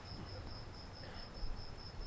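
A cricket chirping steadily, a faint high pulsed call at about six chirps a second, over a low background rumble.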